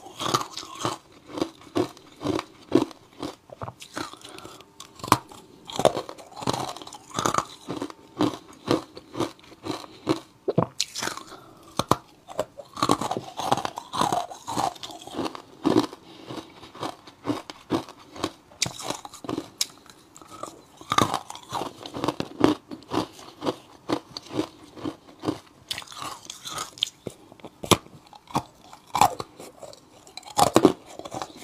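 Close-miked crunching and chewing of ice blocks coated in matcha and milk powder: a steady run of sharp, irregular crunches, several a second.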